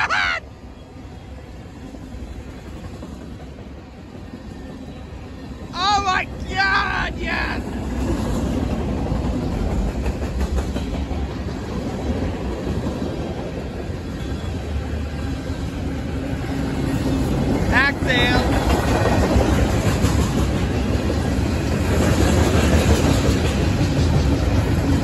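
Freight cars of a passing train, tank cars, covered hoppers and autoracks, rolling by at close range: a steady rumble and clatter of steel wheels on rail that grows louder after the first several seconds.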